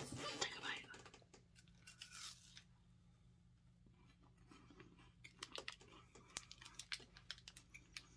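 Wrapper of a chocolate wafer bar being torn open and crinkled in a few short bursts, followed by faint scattered crackling crunches as the wafer is bitten and chewed.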